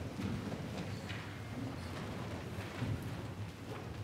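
Low, irregular shuffling and a few light knocks from people moving about in the church before the organ begins. No music is playing.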